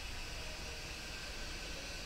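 Steady faint hiss with a low hum underneath: the background noise of the microphone and room, with no other event.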